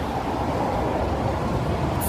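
Steady low rumbling outdoor noise, with no distinct events.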